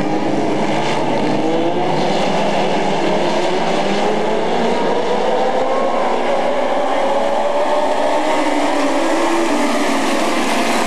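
A pack of dwarf race cars running on an asphalt oval, their motorcycle engines sounding together in several overlapping tones that climb as the cars accelerate.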